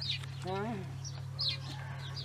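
Small birds chirping in short high calls, with one brief wavering vocal sound about half a second in, over a steady low hum.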